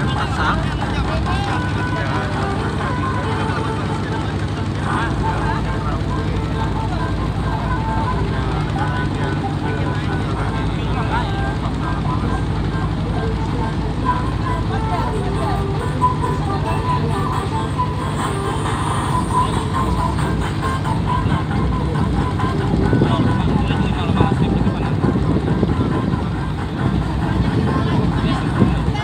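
A klotok river boat's inboard engine running steadily while under way, with people's voices over it.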